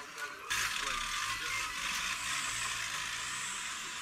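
Faint voices, then an abrupt cut about half a second in to louder, steady outdoor noise with a low hum underneath.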